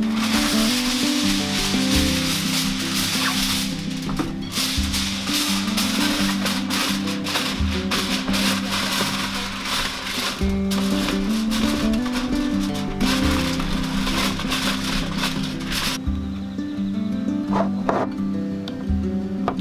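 Background acoustic music with aluminium foil crinkling over it as the foil is handled and pressed into a plastic tub. The crinkling stops about sixteen seconds in, leaving the music.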